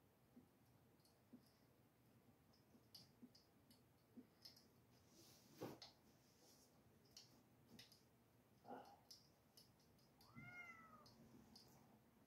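Near silence with faint scattered clicks and scrapes of a small tool working on a painted board. Near the end, one short high animal call that rises and falls.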